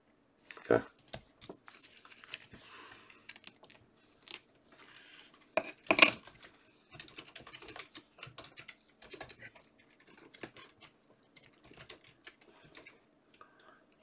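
Light clicks, taps and rustles of trading cards and rigid plastic card holders being handled on a desk mat, with one sharper knock about six seconds in.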